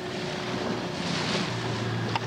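Small outboard motor running steadily on a dinghy under way, with water rushing past the hull and wind on the microphone.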